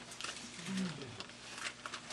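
A quiet pause: a man's brief, faint murmur a little under a second in, with a few soft clicks.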